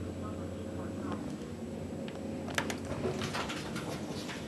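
Schindler HT elevator car: a low steady hum of the car running that fades out about a second in as it comes to a stop, then clicks and clatter from the door mechanism as the doors open near the end.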